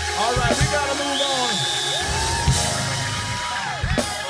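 Live gospel band music with audience voices whooping and yelling over it, and a long held note through the second half.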